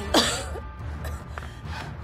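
A woman coughs once, briefly, right at the start, over soft background music with a low steady bass.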